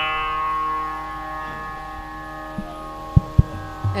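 Veena strings ringing on and slowly fading after a plucked note, over a steady drone. Two sharp clicks come a little after three seconds in.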